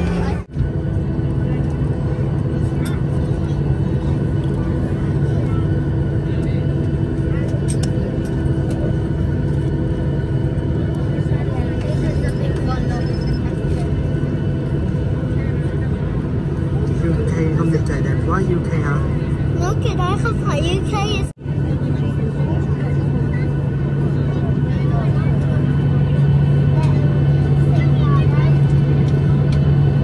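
Jet airliner's engines running steadily, heard from inside the cabin as a constant drone and hum during takeoff. The sound cuts out suddenly twice, about half a second in and about 21 seconds in, then resumes and grows a little louder toward the end.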